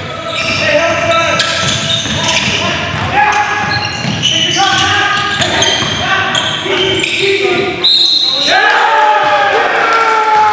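Live basketball play in a reverberant gym: a basketball bouncing on the hardwood floor, sneakers squeaking in short high squeals, and players calling out. A brief high tone sounds about eight seconds in.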